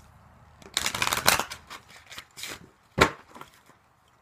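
A deck of oracle cards being shuffled by hand: a dense, rapid flutter of cards about a second in, then a few lighter taps and one sharp snap of the cards about three seconds in.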